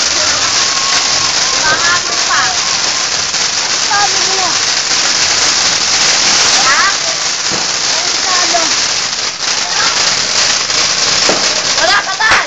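Ground fountain fireworks spraying sparks with a loud, steady hiss.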